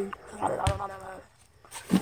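A boy humming a drawn-out, thinking 'mmm', with a sharp knock partway through and a thump near the end.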